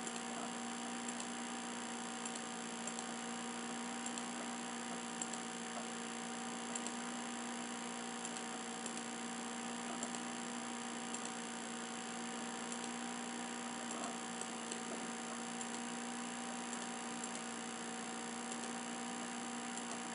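Steady electrical mains hum with faint clicks every second or two, the mouse clicks of placing polygon points.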